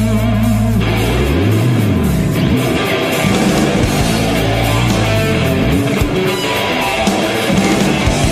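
Live instrumental rock: electric guitar, bass guitar and drums playing loudly at a steady level. A low held note swoops up and back down in pitch about a second in.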